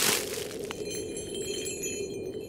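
A cartoon twinkle sound effect. It opens with a short whoosh, then high, glassy chime tones shimmer and ring on over a low steady drone.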